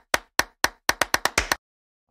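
An edited sound effect of sharp, dry clicks, about nine of them, coming faster and faster and stopping about one and a half seconds in.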